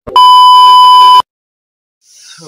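Colour-bars test-tone sound effect: a loud, steady, single-pitched beep lasting about a second, which cuts off suddenly.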